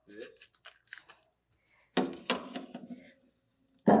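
Metal baking tray sliding onto the wire rack of a toaster oven: a run of light clicks and scrapes, then two louder metallic knocks about two seconds in, with a short ringing after them.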